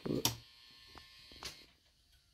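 A wall light switch clicked a few times, the clicks about half a second apart, after a new LED light fixture has been wired to it. A faint steady electrical whine sounds under the clicks and fades out after the last one.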